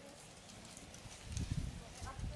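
Wind buffeting the microphone: an irregular low rumble that sets in a little past halfway and grows louder, over faint scattered ticks.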